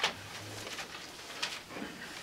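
Faint paper rustles of Bible pages being turned, a sharp one at the start and a softer one about a second and a half in, with a short low hum just after the first rustle.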